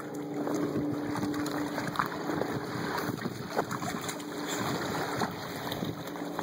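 Dogs wading in shallow lake water at the shore, with small irregular splashes and sloshing. A steady low hum fades out in the first two seconds.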